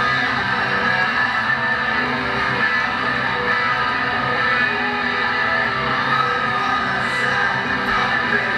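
Electric guitars played live through stage amplifiers, letting held chords ring out steadily.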